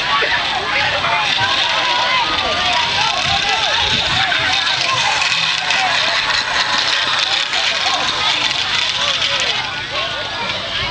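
Many children's voices shouting and chattering at once, overlapping throughout.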